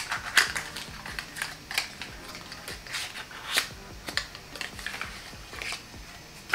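Handling of small cosmetics packaging, a cardboard product box and the plastic jar inside it, making irregular sharp clicks and crackles, a few each second.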